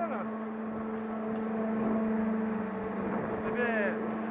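Chairlift station machinery running with a steady hum, slightly louder around the middle. Brief voices at the start and near the end.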